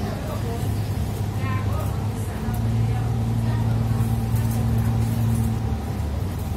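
Double-decker bus engine and drivetrain heard from the upper deck: a steady low hum that grows louder, with a steadier pitch, from about two seconds in.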